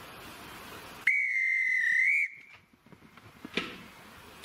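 Railway guard's whistle blown once, a steady shrill blast of just over a second that lifts slightly at the end, signalling the train ready to depart. A short knock follows about a second later.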